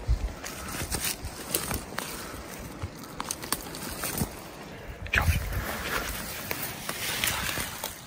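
Boots crunching and brushing through dry grass and brush on a steep climb, in irregular steps with clothing rustling. The rustling gets louder and thicker about five seconds in, as the walker pushes into the grass.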